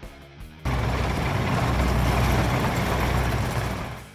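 Soft background music, then, about half a second in, a sudden loud rumbling noise sound effect for the outro title card. It holds for about three seconds and fades near the end.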